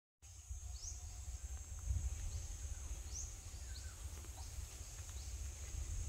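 A steady high-pitched insect drone with a few short, rising bird chirps, the clearest about a second in and around three seconds in, over a low rumble.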